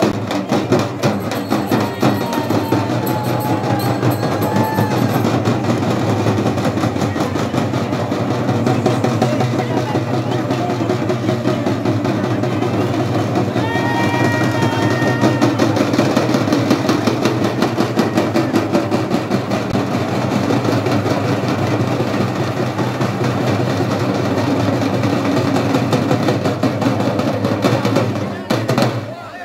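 Fast, dense folk drumming playing continuously for dancing. A wavering high note rises over the drums briefly a few seconds in and again about halfway through.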